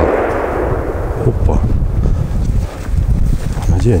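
Distant gunshot, its rolling report echoing and fading over about a second and a half. A low rumble runs beneath.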